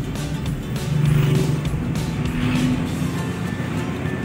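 Road and running noise of a Suzuki DA64V van, heard from inside the cabin while driving, with music playing over it. It gets louder for a moment about a second in.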